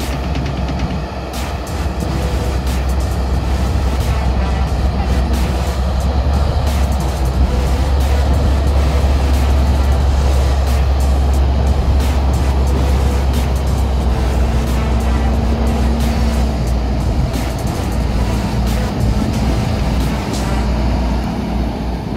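Large Fendt Vario tractor diesel engines running steadily, a deep, continuous drone.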